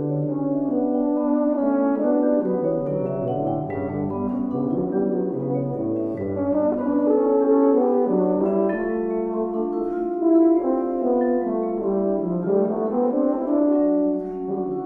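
Euphonium and tuba playing held, melodic lines together, with marimba struck beneath them.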